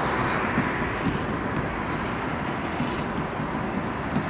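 Steady road traffic noise, an even rumble and hiss with no distinct events.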